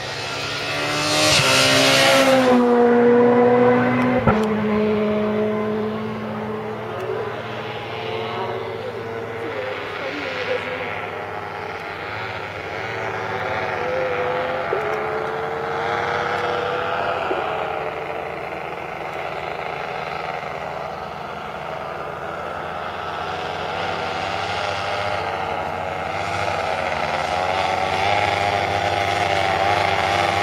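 Rally car passing at speed in the first few seconds, its engine note dropping as it goes by. Then the steady drone of a paramotor's small engine flying overhead, its pitch wavering slightly.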